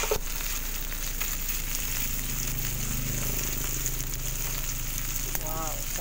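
Chicken and pork belly sizzling on a hot grill pan, a steady frying hiss. A brief knock right at the start.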